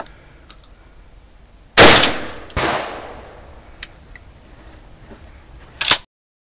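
A single pump-action shotgun shot about two seconds in, ringing out for about a second afterwards. A second, quieter sharp sound follows just after, and there is a brief loud noise at the very end.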